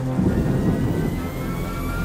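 Film-trailer score and sound design: a deep rumbling drone under a thin high tone that slowly rises in pitch.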